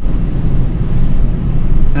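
Pickup truck driving slowly along a rough, snowy dirt track, heard from inside the cab: a steady rumble of engine and tyres.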